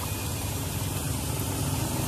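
An engine idling steadily, a low, even rumble with general workshop noise over it.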